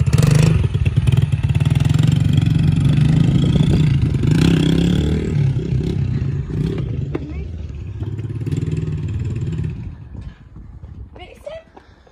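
A Yamaha TT-R110 pit bike's small single-cylinder four-stroke engine running at low speed as it is ridden off. The engine stops about ten seconds in.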